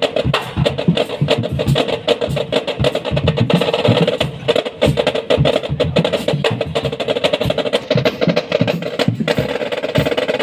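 A marching drumline playing fast, dense stick patterns and rolls on its marching drums. There is a brief break just after nine seconds in, then the playing picks straight back up.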